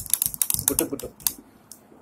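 Plastic toy bird and plastic artificial flowers handled right against the microphone: a quick run of small clicks and rustles that dies away about a second and a half in.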